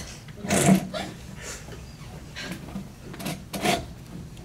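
Rustling of a stiff satin ball gown being moved and tugged at: a handful of short swishes, the loudest about half a second in.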